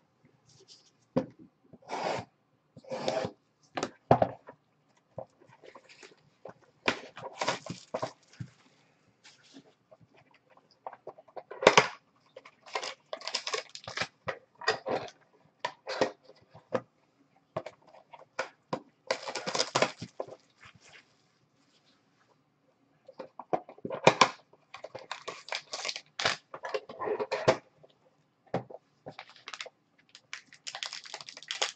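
Gloved hands opening a trading-card box and pulling out its packs: cardboard and wrapping rustling, crinkling and tearing in short, separate bursts, with a brief pause about two-thirds of the way through.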